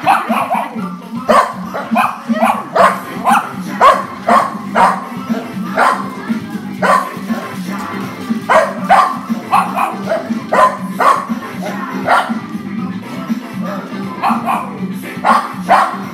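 Several dogs barking over and over, short sharp barks in quick runs, over music playing.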